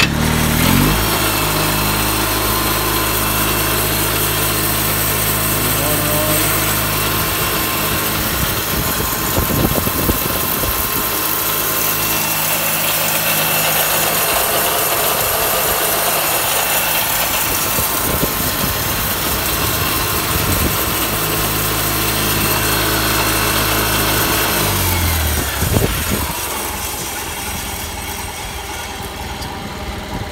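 The small water-cooled engine of a homemade bandsaw mill starts and runs steadily at idle. It cuts off about 25 seconds in, leaving a quieter whir of the radiator fan.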